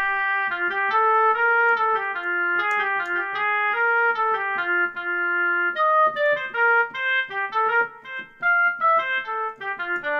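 GarageBand for iPad's sampled oboe played from the on-screen keyboard: a melodic line of held, overlapping notes, turning to shorter, quicker notes about halfway through.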